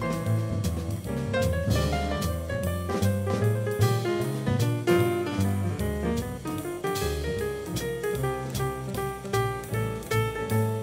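A jazz piano trio playing a swing tune. Grand piano over plucked acoustic double bass, with a drum kit keeping time.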